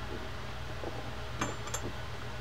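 Steady low hum, with two faint, light clicks of small metal fishing-reel parts being handled about one and a half seconds in.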